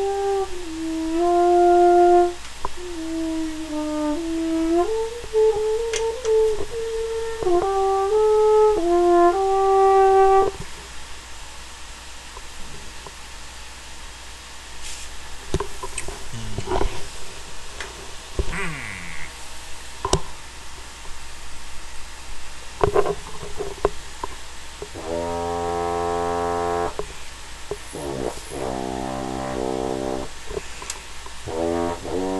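Single French horn in F, a Conn that the owner takes for a 1921 Director 14D, playing a slow phrase of held notes for about ten seconds. A pause with a few scattered clicks follows, then low, buzzy notes near the end.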